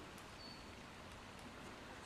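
Near silence: faint room hiss, with a brief faint high tone about half a second in.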